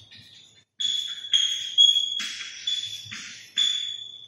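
Chalk writing on a chalkboard: a run of short strokes, roughly two a second, each starting with a sharp scrape, with a thin high-pitched squeal running through them.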